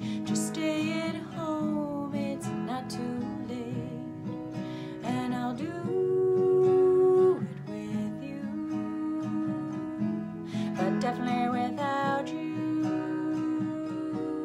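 Acoustic guitar strummed with a woman singing over it in long held notes; the loudest is a sustained note about six seconds in, lasting over a second.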